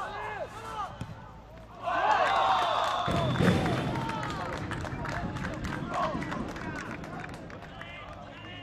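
A small crowd of football spectators shouting and cheering a goal, with clapping; the cheer breaks out suddenly about two seconds in and slowly dies down.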